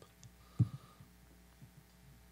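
Low steady electrical hum in a pause between speech, with one short dull thump about half a second in and a few faint soft knocks.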